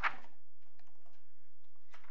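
Faint, scattered clicks of a computer keyboard being typed on, over a steady low electrical hum.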